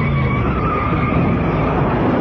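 Loud, steady sci-fi machinery sound effect: a dense rumble with faint held tones over it, as a sparking machine works.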